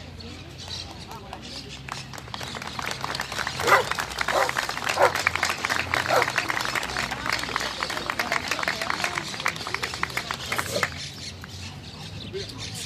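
A small crowd applauding for about eight seconds, starting a couple of seconds in and dying away near the end. A few short calls rise over the clapping early on.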